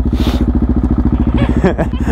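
Motorcycle engine running at low speed through a slow turn, its firing pulses an even, rapid beat. There is a brief hiss just after the start.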